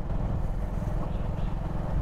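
Steady low rumble of a moving vehicle, with engine and wind noise on the microphone as it travels along the road.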